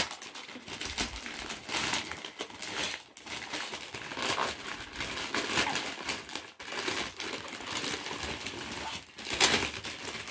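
Wrapping paper rustling and crinkling in irregular bursts as small presents are handled and unwrapped, with a louder crackle of paper near the end.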